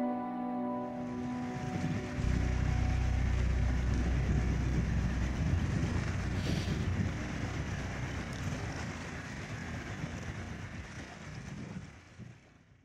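Background music dies away in the first two seconds, giving way to outdoor shore noise: wind buffeting the microphone over choppy open water, with a deep rumble between about two and five seconds in. The noise fades out at the end.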